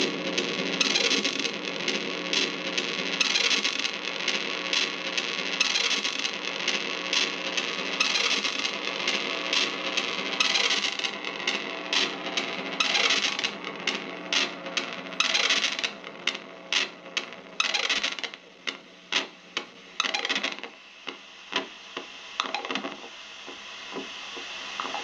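Sustained electronic drone from a chain of effects pedals played through a small Vox guitar amp, broken by many scratchy crackles and noise bursts as the pedal knobs are turned. The drone cuts away about twenty seconds in, leaving scattered clicks and crackles.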